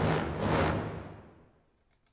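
ProjectSAM Pandora's sampled full orchestra playing one short, dense cluster chord: a sudden loud hit that dies away over about a second and a half.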